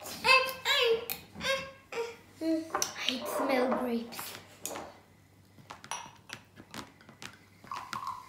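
A child's voice talking in the first half, then a few light clicks and taps as a drink bottle, its cap and a glass are handled on a table.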